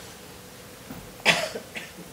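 A single short cough about a second in, followed by a couple of fainter short sounds.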